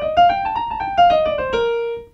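Kawai piano played one note at a time with the right hand: a quick run stepping up about an octave and back down, ending on a held low note. It is the B-flat major scale, demonstrated up and down.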